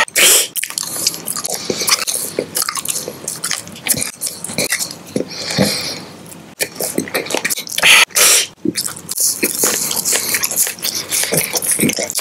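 Close-miked chewing and biting of a sugar-coated jelly candy on a lollipop stick, with wet mouth clicks and smacks throughout. There are two loud bursts, one just after the start and one about eight seconds in.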